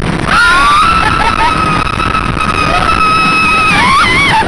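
A roller-coaster rider's long, high held scream, with other riders' shorter shouts around it, over loud wind and the rumble of the wooden coaster train. The scream starts about a third of a second in and breaks off just before the end.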